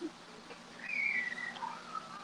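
A faint, thin, high whistle-like tone about a second in, sliding slightly down in pitch, then a weaker wavering whistle.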